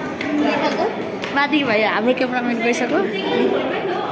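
Several people talking at once: close-by chatter of overlapping voices with no single clear speaker.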